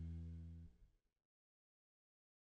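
The last held chord of background music fading out and ending about a second in, then complete silence.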